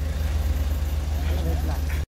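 A Toyota sedan's engine running close by as the car moves off, a steady low rumble, with faint voices near the end.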